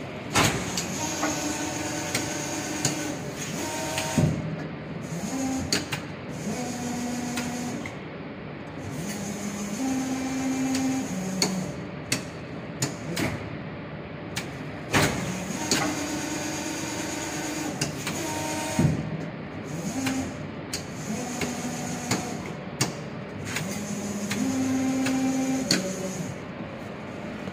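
Kawaguchi KM360 servo-driven injection molding machine running an automatic cycle. The hydraulic pump's hum holds a tone, then steps to other pitches through the stages of the cycle, with sharp clacks and knocks as the clamp and mold move. The whole sequence repeats about 15 seconds later.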